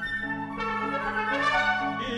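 Chamber orchestra playing a short instrumental passage of held chords, with brass prominent. A new chord comes in about half a second in.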